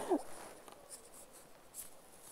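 Faint scratchy rubbing and a few small clicks, typical of handling noise. A short falling vocal sound trails off at the very start.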